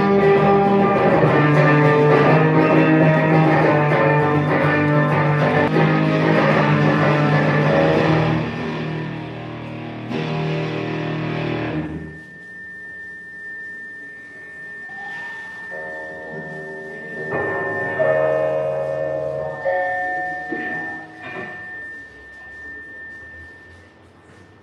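A live band with guitar playing a song that thins out about eight seconds in and ends about twelve seconds in. After the ending, a thin steady high tone holds under a few quiet scattered notes.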